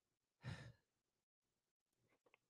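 A man sighs once into the microphone, a short breathy exhale about half a second in; otherwise near silence.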